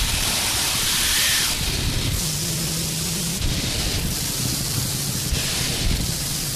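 Noise-style soundtrack of static hiss that switches abruptly in level every second or so, over a low, steady electronic hum.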